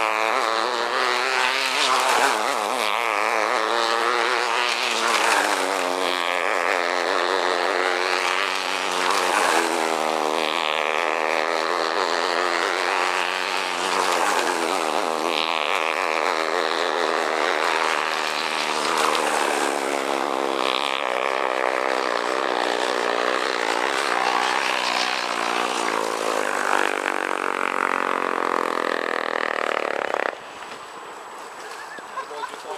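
A-class flash steam tethered model hydroplane running at speed on its tether line, its engine note swelling and fading about every two seconds as it laps the pole.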